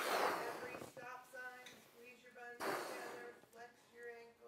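A man blowing up a rubber balloon by mouth: two loud breaths, one at the start and one about two and a half seconds in, with a voice talking between them.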